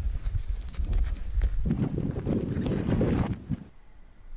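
Wind rumbling on a helmet camera's microphone, with crunching and scraping of snow and clicks of ski poles as the climber scrambles on the slope. A louder, rougher scraping stretch in the middle stops abruptly.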